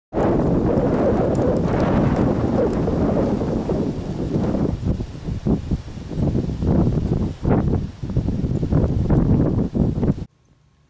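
Wind buffeting the microphone outdoors: a loud, low rumbling noise, steady at first and then coming in uneven gusts through the second half.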